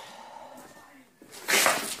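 Low room tone, then about one and a half seconds in a short, breathy rush of noise: a sharp breath drawn just before speaking.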